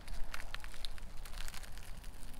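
Palmyra palm fruit being pulled apart by hand, its fibrous husk and stringy flesh tearing with a run of small cracks and rips.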